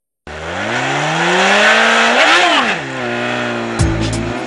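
Motorcycle engine accelerating, its pitch climbing for about two seconds and then falling away. Near the end, drum beats of music come in.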